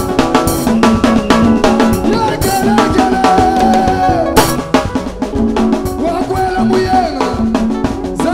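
Upbeat live band dance music driven by a drum kit's quick, even snare and kick strokes, with sustained guitar and keyboard lines above.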